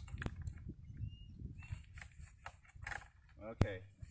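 Small clips being fastened by hand on a dog's restraint, with light fumbling and a short click just after the start, then one sharp click about three and a half seconds in as a clip snaps shut.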